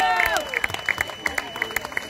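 Crowd of spectators clapping, with a voice calling out on a falling pitch in the first half second.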